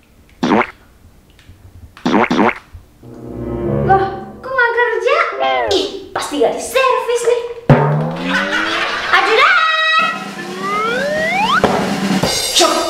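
Comedy sound effects over music: two short vocal cries early on, then a run of sliding, bending tones and boings, ending with several rising whistle-like glides.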